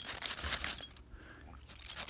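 A dog digging in crusty snow with its front paws after an animal beneath it: a quick run of crunching, scraping snow that thins out about halfway through.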